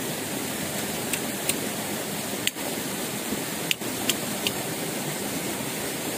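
Steady rushing of running water, with about half a dozen light, sharp clicks scattered through the first four and a half seconds.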